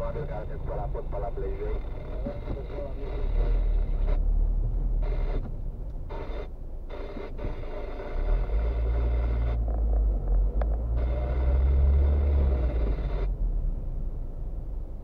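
Engine and road rumble heard from inside a moving car's cabin. The low rumble swells twice, about three seconds in and again for several seconds past the middle, with a faint voice near the start.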